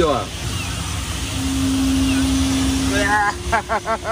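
Airflow rushing over a glider's canopy and airframe as it dives into a cloud. A steady low tone holds for about two seconds, and near the end a voice exclaims and laughs in short pulses.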